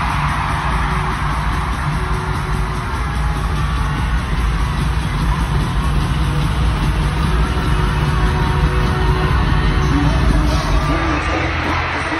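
Live pop band playing on an arena stage, loud and heavy in the bass, recorded on a phone from among the audience, with some crowd noise mixed in.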